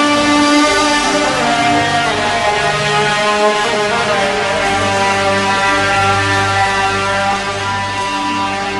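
Live band playing an instrumental passage: guitars and bass under a melody of held notes that step from one pitch to the next, with no singing.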